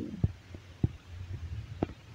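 Three short, soft low thumps over a faint low hum.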